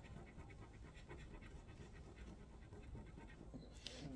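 Faint, quick fingernail scratching at a paper sticker circle, picking it off the sheet.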